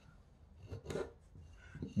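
Carving knife shaving a thin strip of soaked, green cedar bark: a few faint, short scraping strokes about a second in, and one more near the end.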